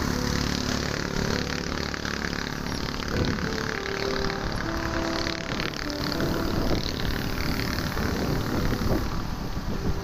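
Steady wind and road noise from riding along a road in traffic, with background music playing over it.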